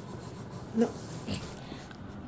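A puppy giving one short yelp a little under a second in, followed by a fainter sound.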